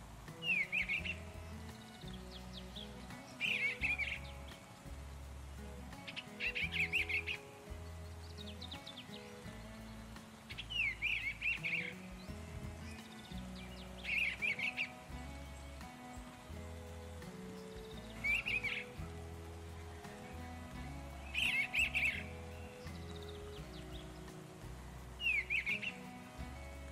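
Background music of soft held notes with bird chirps laid over it: a short burst of chirping comes about every three to four seconds, eight times.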